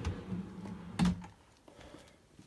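Wooden drawer sliding on metal ball-bearing runners with a rolling rumble, ending in a sharp knock about a second in as it reaches its stop.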